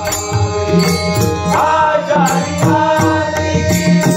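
Devotional abhang bhajan music: a harmonium holding sustained notes with pakhawaj drum strokes keeping a steady rhythm and a high jingling on the beat. A sung phrase comes in around the middle.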